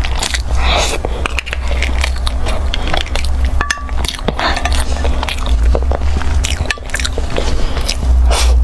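Close-miked eating sounds: chewing and wet mouth sounds on a soft, creamy dessert, with many small sharp clicks, over a steady low hum.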